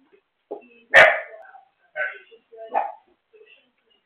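A dog barking three times, about a second apart; the first bark is the loudest and sharpest.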